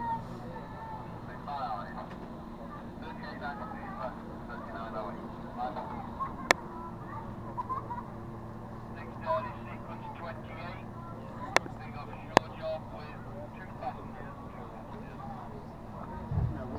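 Steady low drone of distant powerboat engines under faint chatter of people close by. Three sharp clicks, the loudest sounds, fall in the middle and latter part.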